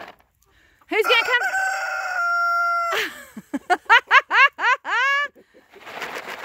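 A rooster crows once, about a second in; the call lasts about two seconds and ends on a long held note. It is followed by a quick run of about six short rising-and-falling chicken calls, the last one drawn out.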